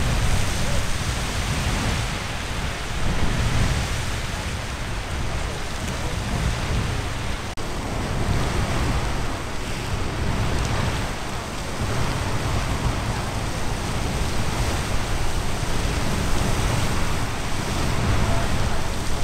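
Castle Geyser erupting: a steady rushing noise of water and steam jetting from its cone, with a strong low rumble under it.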